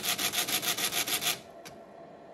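Pachinko machine sound effect: a fast, harsh rattle of about ten pulses a second, lasting about a second and a half and stopping suddenly, then one short click. It accompanies the screen's shaking effect.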